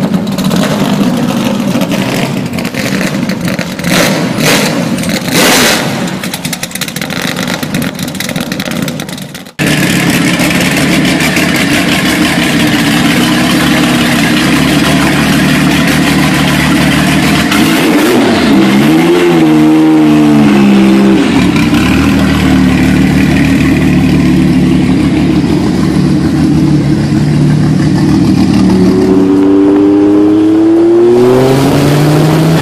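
A 1000 hp Nissan Silvia's engine revving, with several short loud blasts between about four and six seconds in, then cut off suddenly. A 1996 Porsche 993 Twin Turbo's flat-six then runs steadily, is blipped up and down a little past the halfway point, and rises in pitch near the end as the car pulls away.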